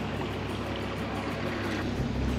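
Water washing and rippling along the hull of an electric narrowboat under way, over a low steady hum, with no engine noise of a diesel.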